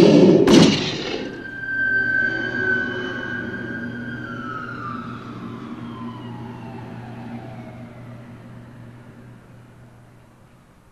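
Two loud bangs in quick succession, then a siren sounding one high steady note that slowly falls in pitch as it winds down and fades, over a low steady hum.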